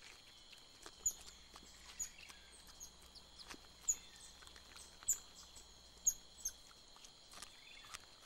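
Faint forest ambience: a steady high insect hum with short, high, falling chirps repeating every half second to a second.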